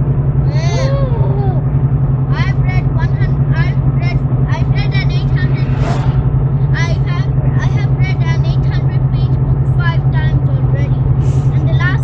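Steady low drone of a Nissan Xterra's engine and tyres at highway speed, heard inside the cabin.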